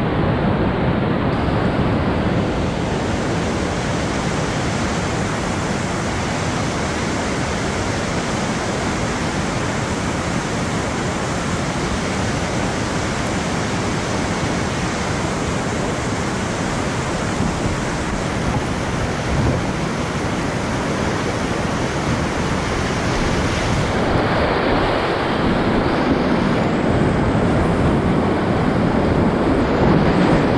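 Whitewater rapids of a fast mountain river at medium-high flow, rushing steadily close by, a little louder near the end.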